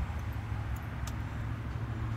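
Steady low mechanical hum, with a few faint light clicks of a plastic zip tie being threaded through under the hood.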